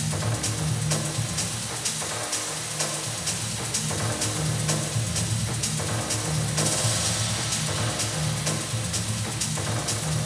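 Minimal techno playing loud through the DJ mix: a pulsing bass line under a steady beat with clicking, metallic percussion. About two-thirds of the way in, a hissing high layer swells up, then drops away near the end.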